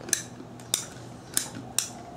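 Metal caulking gun clicking as its trigger is squeezed to push out mirror mastic: four sharp clicks in two seconds.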